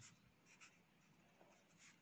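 Faint scratching of a marker pen writing on paper.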